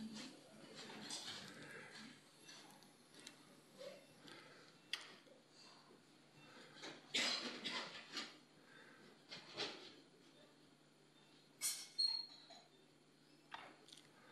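Faint operating-room sounds: a steady low hum with short hissy, squeaky bursts every second or two, and a brief high beep near the end.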